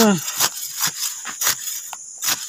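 Short rustles and crackles of cut grass and weeds being handled and dropped into a plastic pot, about five in two seconds, over the steady chirring of crickets.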